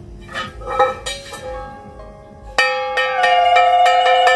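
Brass puja hand bell ringing: light metallic clinks and short rings at first, then, about two and a half seconds in, continuous loud ringing struck a few times a second.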